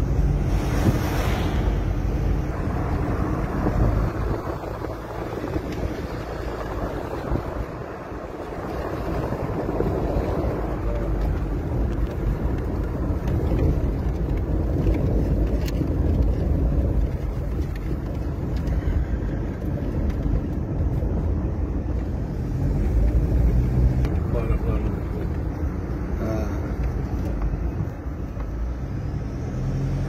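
Steady road noise heard inside a moving car: engine and tyre rumble with wind noise, and a brief louder rush about a second in as a large truck goes by.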